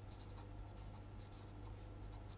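Felt-tip pen writing on paper: faint scratching strokes as letters are formed, over a low steady hum.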